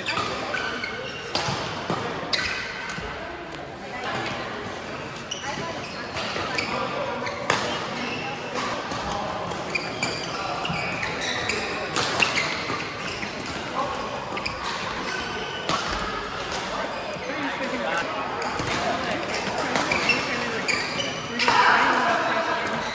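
Badminton rally in a large echoing hall: a string of sharp racket-on-shuttlecock hits, with voices from players around the hall underneath.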